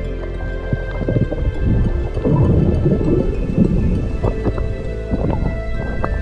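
Background music over the low rumble and crackle of water and bubbles against an underwater camera, swelling from about two seconds in for a couple of seconds.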